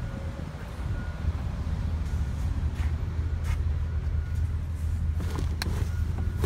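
2017 GMC Acadia Denali power liftgate rising on its electric motor after a foot kick under the bumper, over a steady low rumble, with a few sharp clicks near the end.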